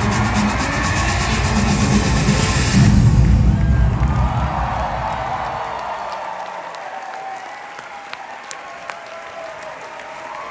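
Loud music with a heavy bass beat over an applauding, cheering audience; the music stops about three seconds in, and the applause and cheering then gradually fade.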